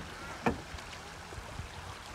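Small wavelets of calm sea lapping on a pebble shore, a steady low wash, with one brief sharp click about half a second in.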